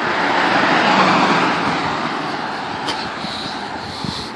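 A car driving past on the street: its road noise swells to a peak about a second in, then fades away.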